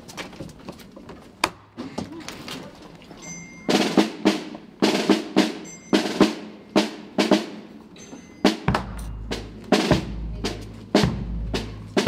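Procession drums: snare drums start beating a steady slow rhythm about four seconds in, roughly two or three strokes a second, and a deep bass drum joins near the end.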